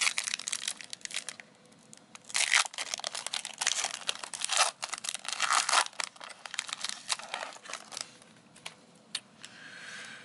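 Foil trading-card pack being torn open at its crimped end and the wrapper crinkled as it is pulled apart, in irregular rustling rips that die down near the end.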